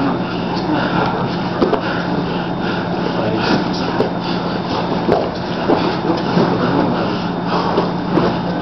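Steady indoor background noise with a low, even hum and faint, indistinct voices, plus a few short soft scuffs and breaths from two men grappling on a mat.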